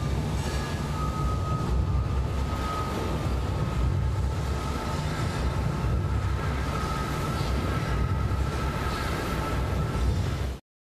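Deep, steady rumble, like sea and wind, under a single thin held tone that comes in about a second in and slowly grows louder: a sound-designed drone from an advertisement's soundtrack.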